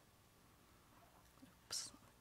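Near silence: room tone, with one short breathy hiss near the end, a breath or whispered sound from the presenter at the microphone.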